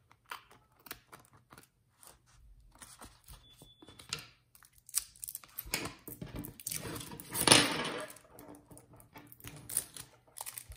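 Small scissors snipping through vellum and cardstock in a few sparse cuts, then paper and vellum rustling and crinkling as the sheets are handled, loudest about two-thirds of the way through.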